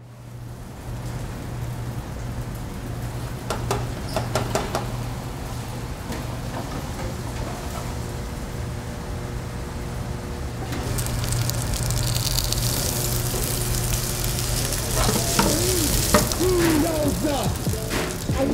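Food frying and sizzling on a commercial kitchen range, over a steady low hum. There is a short clatter of metal utensils a few seconds in, and the sizzle grows louder and brighter in the second half.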